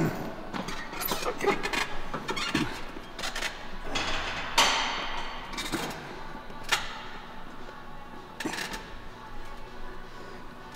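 A man clears his throat, then strains through a set of barbell preacher curls taken to failure, with several short forceful breaths, the strongest about halfway through. Background music plays under it.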